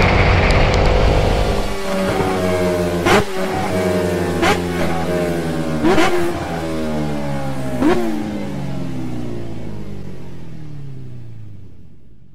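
Motorcycle engine accelerating through the gears: wind and road rush at first, then the engine note climbing and dropping at each of four quick gear changes, each marked by a sharp click, before the sound fades out.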